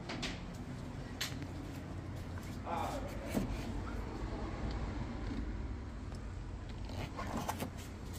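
Steady low background rumble with a few faint clicks and knocks near the start and end, and a brief faint voice about three seconds in.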